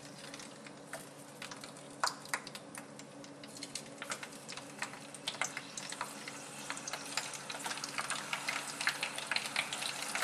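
Hot dogs frying in hot peanut oil in a pan: sparse crackles and pops at first, growing into dense, steady crackling as the oil heats around them.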